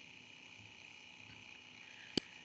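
Near silence: faint room tone with a faint, steady high hum.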